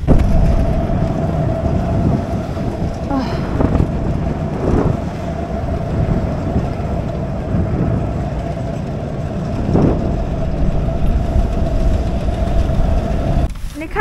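Ski-area magic carpet conveyor lift running: a steady mechanical hum with a constant whine over a low rumble, cutting off shortly before the end.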